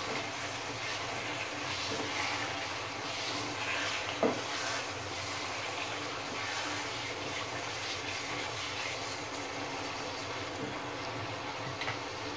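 Chicken curry sizzling in oil in a non-stick wok as a wooden spatula stirs it, a steady frying hiss with a brief knock of the spatula about four seconds in.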